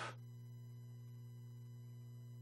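A steady, low electrical hum with a buzz of evenly spaced overtones, unchanging throughout.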